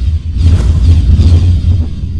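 Cinematic logo-intro sound design: a deep, steady bass rumble with a rushing whoosh sweeping through from about half a second in.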